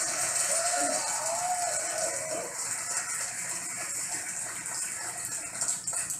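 Studio audience applauding and laughing, a steady wash of clapping with a few voices laughing in the first couple of seconds.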